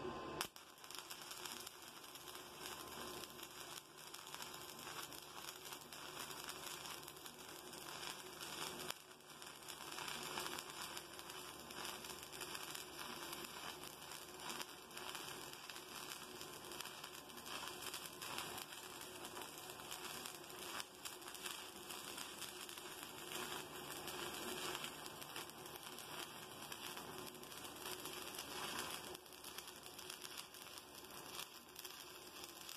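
Stick (SMAW) welding arc crackling and sputtering steadily as a rod electrode runs a bead joining thin 14-gauge square tube to thicker 3/16-inch flat bar. A sharp crack right at the start as the arc strikes.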